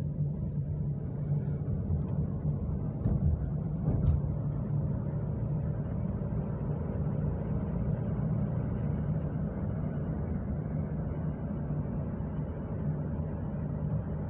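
Steady low road and engine rumble heard inside the cabin of a moving vehicle, with a couple of brief knocks about three and four seconds in.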